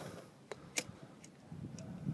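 A few faint, sharp clicks spread unevenly over two seconds as a caulking gun loaded with a Gripfill adhesive cartridge is handled and brought up to a roof tile.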